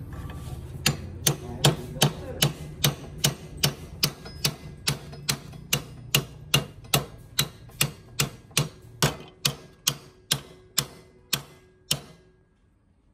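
Evenly spaced sharp metallic knocks, about two and a half a second, each with a short ring, as a tool works the knife held in the bench vise; they spread out and stop near the end.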